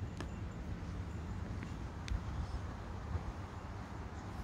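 Outdoor background noise: a steady low rumble with a few faint clicks.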